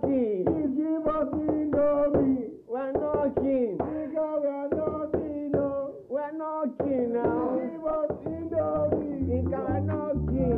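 A song with a melodic voice singing throughout, gliding between held notes over a light backing. Low drum beats come in near the end.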